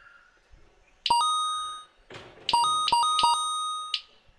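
Electronic two-note beeps from an RC race lap-timing system, each one registering a car's transponder as it crosses the timing line. One longer beep about a second in, then a quick run of several more in the second half as the cars pass in close succession.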